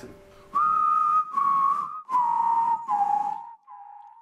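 Whistled outro jingle: four notes, each held about half a second, stepping down in pitch over a noisy backing, then echoing repeats of the last note that fade out.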